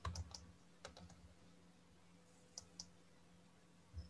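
Faint clicks of a computer keyboard and mouse, a handful of short clicks with gaps between: a control-click being tried on a link.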